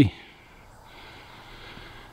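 Near quiet in a still cedar forest: only a faint, steady hiss of background ambience, with no distinct events.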